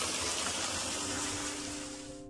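Garden fountain water falling and splashing into a stone pool, a steady rushing that fades near the end as soft piano music comes in.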